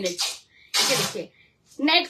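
A woman coughs once, a single short noisy burst about a second in, just after the end of a spoken word.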